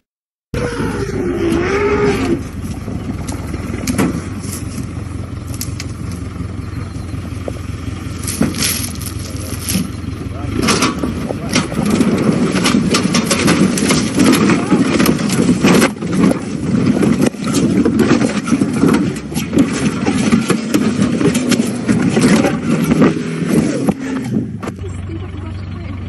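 After a half-second gap, an open safari vehicle's engine runs with a steady low hum. Over it come many sharp knocks and clicks and people's voices.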